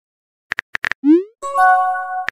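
Texting-app sound effects: a few quick keyboard-tap clicks, then a short rising pop as a message bubble appears, followed by a brief held synthesized chord.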